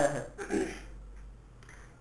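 A man's voice ends a word, makes one brief throat-clearing sound about half a second in, then pauses over a low steady hum.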